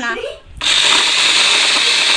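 An electric blender switches on about half a second in and runs with a loud, steady whir, blending banana and milk into ice cream.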